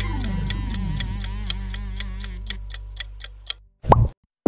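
Countdown-timer ticking sound effect, about four ticks a second and quickening near the end, over a music bed that fades out. A short, sharp, loud sound comes right at the end as the timer runs out.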